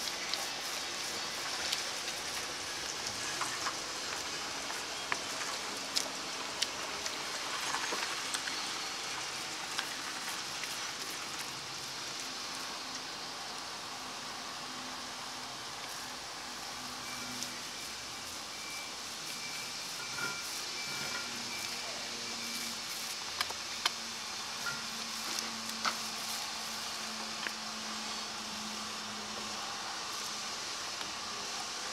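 Small paint roller working sticky bitumen blacking onto a narrowboat's steel rudder: a steady crackly hiss with scattered clicks as the roller rolls over the tacky coating.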